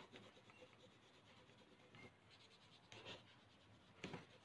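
Faint scratching of a colour pencil shading across paper laid over a leaf, in a few short strokes.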